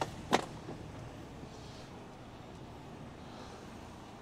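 Iveco lorry's diesel engine running low and steady, heard from inside the cab as the truck creeps forward, with one sharp click about a third of a second in.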